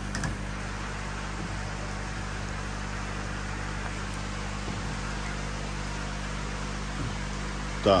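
Steady low hum with an even rushing of water, from the water circulation and aeration of a koi holding tank.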